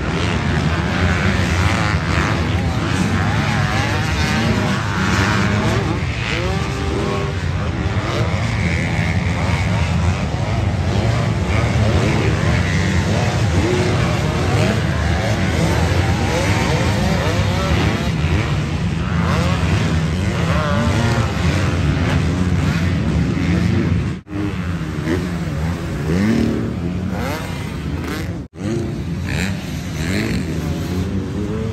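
Several motocross dirt bikes running around the track together, their engines revving up and down through the turns and jumps. The sound cuts out briefly twice near the end.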